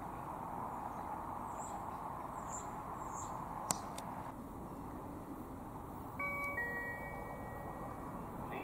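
Railway station public-address chime: a two-note ding-dong, the second note lower, sounding about six seconds in and ringing on, the signal that an announcement is about to follow. Before it there is only a faint steady outdoor background hiss.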